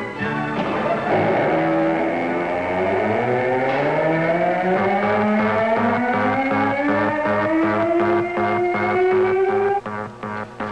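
Blast-off synchronizer sound effect: several electronic tones glide slowly upward together over a steady pulsing beat, and cut off abruptly just before the end.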